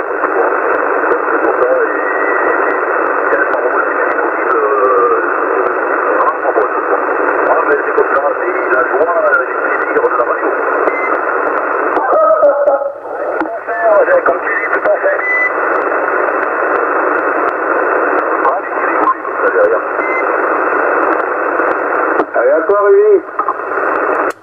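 A CB transceiver's speaker receiving upper-sideband on channel 27: a weak distant station's voice, too buried to make out, under a steady hiss confined to a narrow voice band. The hiss thins briefly about halfway through.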